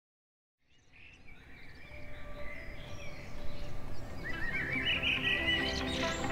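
Birds calling and a music bed fading in from silence and growing louder, with a warbling, rising-and-falling bird call standing out in the second half.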